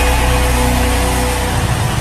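Worship background music: a held keyboard chord over deep sustained bass, under a steady dense roar from a large congregation.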